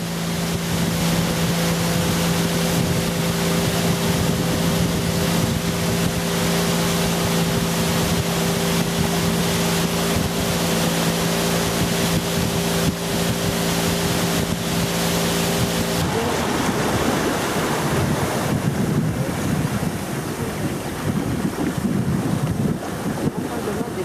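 Motorboat engine running with a steady hum over the rush of water and wind on the microphone. The engine hum cuts out suddenly about two-thirds of the way through, leaving the water and wind noise.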